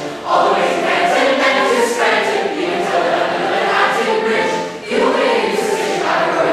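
Large mixed choir of men's, boys' and teenage voices singing together, with short breaks between phrases just after the start and again about five seconds in.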